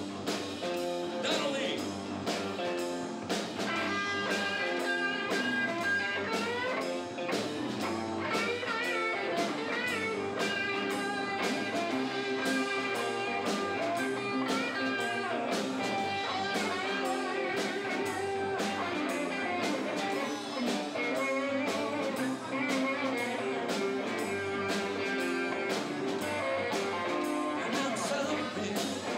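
Live blues-rock band playing an instrumental passage without vocals: electric guitars with gliding, bent notes over bass guitar and a drum kit keeping a steady beat.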